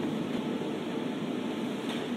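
Steady hiss of background noise, even throughout, with no distinct tones or knocks.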